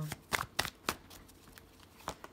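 A deck of tarot cards being shuffled in the hands: three or four sharp card snaps in the first second, then softer.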